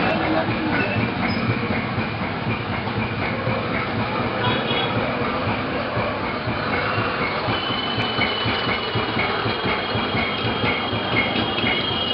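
Continuous loud background din with voices mixed in. A steady high tone comes in about two-thirds of the way through and continues.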